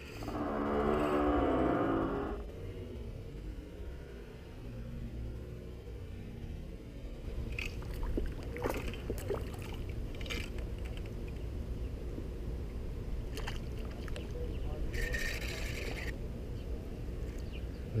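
A drawn-out vocal sound from a person for about two seconds, then steady low wind rumble on the microphone with scattered clicks and a brief hiss near the end.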